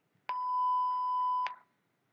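A single steady electronic beep, about a second long, that starts a moment in and cuts off cleanly. It is the cue tone that marks the end of a dialogue segment in interpreting-test practice.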